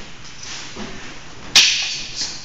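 Eskrima sticks clashing in a sparring exchange: one sharp crack about a second and a half in, the loudest sound here, followed by a short fading rush.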